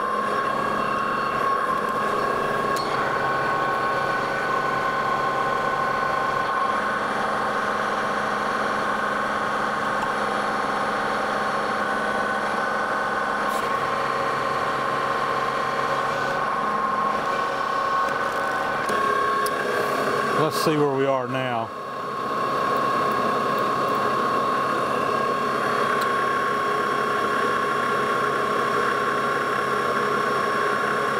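Lodge & Shipley metal lathe running under power, turning down a hex-stock shaft, with a steady high whine made of several tones. About two-thirds of the way through, the pitch sweeps down briefly and the level dips, then the steady running resumes.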